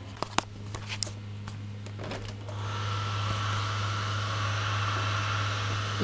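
Septic pump running steadily as the settling basin is pumped out: a constant low hum, joined about two and a half seconds in by a louder steady hiss. A few sharp handling clicks near the start.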